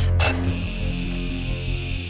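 Cartoon soundtrack: low held synthesizer notes under a sci-fi sound effect, with a brief swish about a quarter second in, then a steady high electronic whirring hiss.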